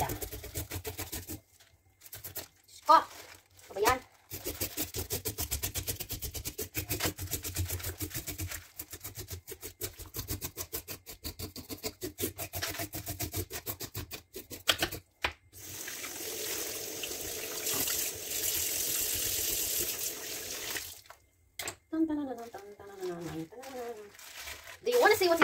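A knife scraping scales off a rainbow trout's skin in a wet sink, in quick repeated strokes, followed by several seconds of tap water running. A brief voice comes near the end.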